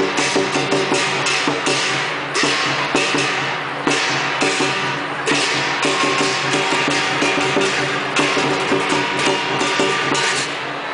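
Lion dance percussion: a large drum with clashing cymbals beating out a steady, driving rhythm, with louder crashes every second or so.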